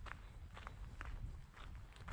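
Footsteps of a person walking on a paved path, about two steps a second, over a faint low rumble.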